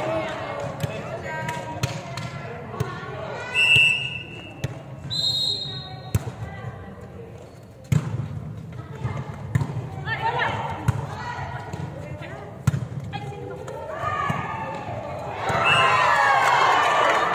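A volleyball being struck and bouncing on a sports-hall floor: sharp thuds scattered through, the loudest about eight seconds in and again near thirteen seconds. Brief high squeaks of shoes on the court and players shouting to each other, louder near the end.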